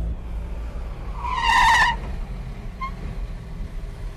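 Car engine sound effect running low and steady, with a brief high wavering squeal about a second in.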